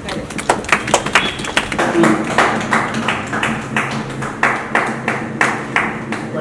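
A small group of people clapping, with many uneven claps several times a second, and voices talking underneath.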